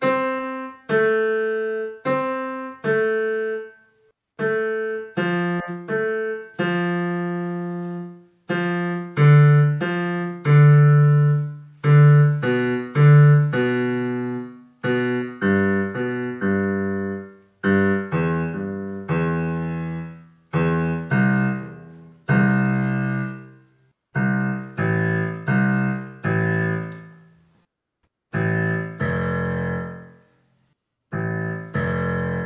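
Digital piano played one note at a time, about a note a second with short pauses: a beginner skipping down the keyboard in thirds from middle C, the notes falling in pitch. Heard over a video call.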